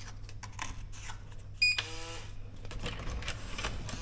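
Electronic hotel keycard door lock reading a card: a short high beep and then a lower tone about a second and a half in, the lock's signal that the card is accepted and the door unlocks. Light clicks and taps of the card and handle run around it.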